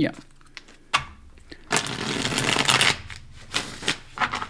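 A deck of tarot cards being shuffled by hand: a single tap about a second in, then about a second of rapid, dense card flutter, followed by a few light taps as the deck is squared.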